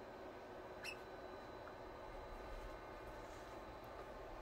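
Faint low rumble of model trains running on the layout under a steady hiss, with one brief high squeak about a second in. The rumble grows a little from about halfway.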